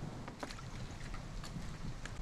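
Outdoor ambience dominated by a low wind rumble on the microphone, with a few faint clicks or taps.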